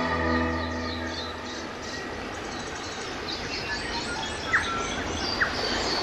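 Soft music chord fading out over the first second or so, then small birds chirping repeatedly over steady outdoor background noise, with two brief sharp louder sounds about four and a half and five and a half seconds in.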